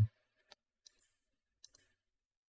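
Faint computer mouse clicks: a single click about half a second in, another near one second, and a quick double click about a second and a half in.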